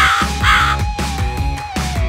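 Cartoon crow cawing twice in quick succession, about half a second apart right at the start, a comedy sound effect for bad luck. Background music with a steady low beat and a held tone runs underneath.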